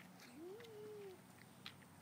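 A single faint animal call, under a second long, rising and then slowly falling in pitch. A faint click follows near the end.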